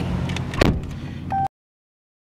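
A car door shuts with one loud thud about half a second in, over the low hum of the idling car's engine, followed by a short beep. The sound then cuts off abruptly into dead silence.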